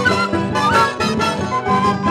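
Bolivian huayño folk music: strummed charangos keeping a steady dance rhythm under a high melody line.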